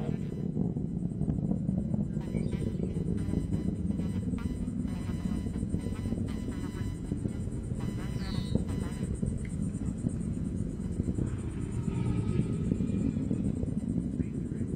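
Atlas V rocket's RD-180 main engine and two solid rocket boosters burning during ascent after throttle-up: a steady low rumble.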